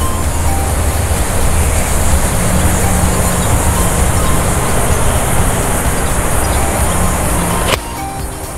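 A steady, loud motor-like running noise with a low hum under a hiss, cutting off suddenly near the end.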